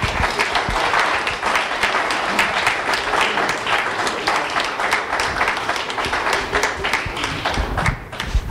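Audience applauding with sustained clapping, which ends abruptly.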